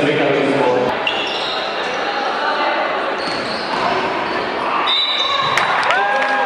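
Indoor basketball game sound: players' voices and a ball bouncing on a hardwood court, echoing in a large hall. Short high-pitched squeaks come near the end.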